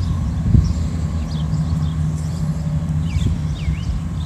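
A steady low motor hum, like a running vehicle engine, with a brief thump about half a second in and a few faint high chirps near the end.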